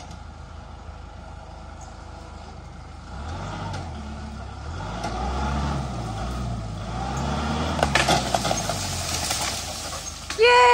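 Compact tractor's diesel engine running, revving up about three seconds in and working harder as the tractor moves, with a stretch of crackling and snapping near the end.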